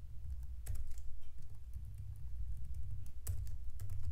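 Typing on a computer keyboard: a few scattered keystrokes, over a low steady hum.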